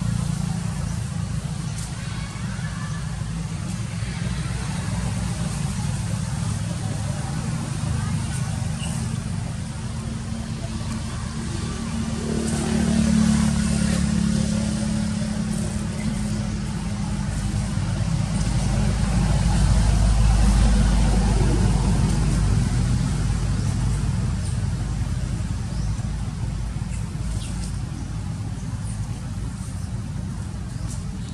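Low, continuous rumble of motor traffic, swelling twice as vehicles go by: once near the middle and again about two-thirds of the way through.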